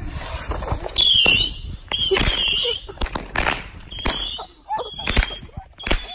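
Fireworks going off: several short shrill whistles that waver in pitch, among a string of sharp bangs and pops about one a second, coming quicker near the end.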